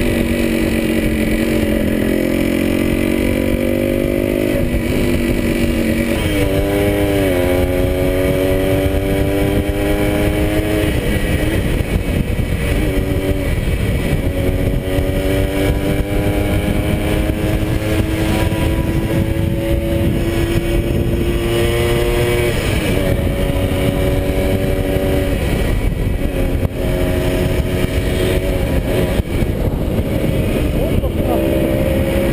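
Yamaha DT175 single-cylinder two-stroke motorcycle engine under way, its note climbing through each gear and dropping back at the gear changes several times, with wind rushing over the microphone.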